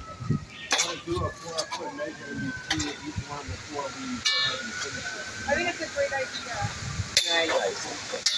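A few sharp metallic clinks and knocks as a metal cross-brace pipe and its fittings are handled and fitted into place, the last ones ringing briefly, under low talking.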